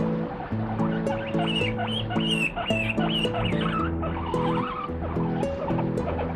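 Abyssinian guinea pig squealing while being stroked, a run of high wavering squeals from just over a second in for about two seconds, then lower wavering calls, the sound of it protesting at being touched. Background music with a repeating chord pattern plays throughout.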